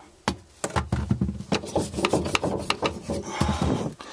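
Irregular knocks, clicks and rubbing from hands handling a wooden bathroom vanity cabinet and the camera close to the microphone, as the cabinet under the sink is opened.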